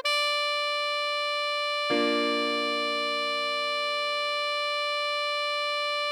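Synthesized alto saxophone holding one long, steady note, the tied B of the melody. A keyboard chord strikes in underneath about two seconds in and sustains with it.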